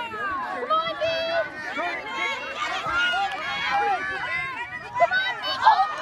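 Many overlapping voices of sideline spectators and young children, calling out and chattering with no single clear speaker, some shouts high-pitched.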